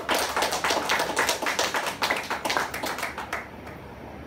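A small group of people applauding, the clapping thinning out and stopping about three and a half seconds in.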